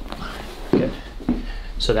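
Short stretches of low, murmured speech in a small room, with no clear joint pop.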